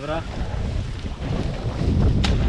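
Wind buffeting the microphone of a helmet-mounted action camera, an even low rumble.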